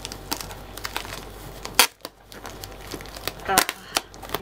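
Plastic packaging crinkling and rustling as it is cut open with scissors, with scattered snips and clicks and one sharp snap just before the middle.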